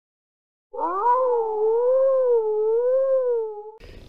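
A wolf howl: one long call that rises at the start, then wavers slowly up and down, starting about a second in and fading out near the end.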